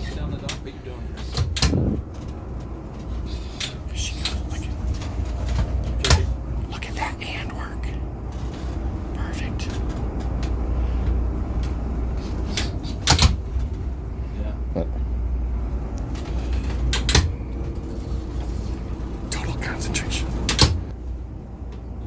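Boat's inboard engines idling with a steady low rumble, with a sharp clunk every few seconds, five in all, as the shift levers are moved in and out of gear while manoeuvring into a slip.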